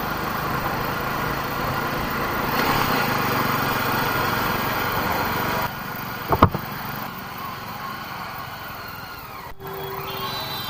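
Motorcycle running at road speed with wind rushing over the helmet-mounted microphone. After an abrupt cut it runs more quietly at low speed, with one short loud blip a little past halfway.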